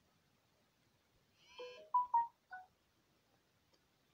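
Short electronic phone tones: a brief high chirp, then a few quick beeps, the two loudest close together, about one and a half to two and a half seconds in.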